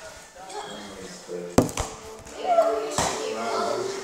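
Sharp knocks among children's voices: a loud one about a second and a half in, followed at once by a couple of smaller ones, then another about a second and a half later.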